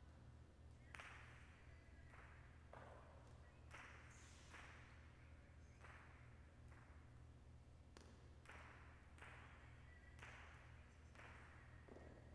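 Jai alai pelota cracking off the fronton walls and cestas in a rally, about a dozen sharp hits a half-second to a second apart, each with a short echo in the hall. A low steady hum runs underneath.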